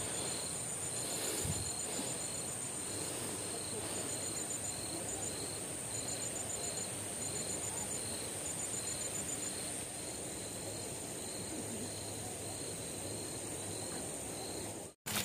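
Insects chirping steadily in the background: a continuous high whine, with a lower chirp repeating about twice a second and short rapid trills that start and stop.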